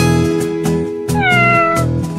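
A cat meows once, a single call falling in pitch a little past a second in, over acoustic guitar background music.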